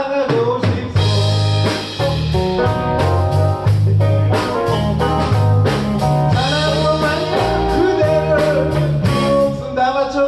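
A live band of electric guitars, bass guitar and drum kit playing a mostly instrumental passage with a steady beat, a singing voice coming in again near the end.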